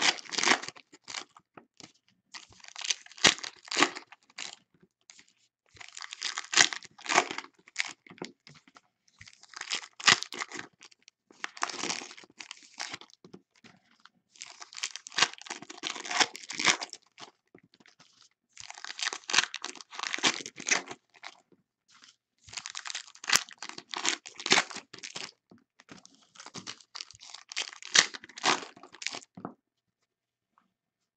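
Foil trading-card packs being torn open and their wrappers crinkled, one pack after another, in about nine crackly bursts a few seconds apart.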